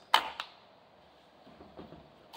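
A flip-up sight on an airsoft rifle snapping into place: one sharp click just after the start, a smaller click a moment later, then a few faint handling ticks near the end.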